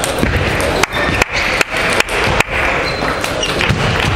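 Table tennis rally: the celluloid ball struck back and forth between rubber-covered bats and the table, a run of five sharp clicks about 0.4 s apart, ending about two and a half seconds in. Under it, the steady background noise of a busy hall with other matches going on.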